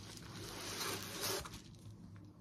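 Bubble-lined plastic poly mailer rustling as a fabric tote bag is slid out of it. The rasping rustle fades out about one and a half seconds in.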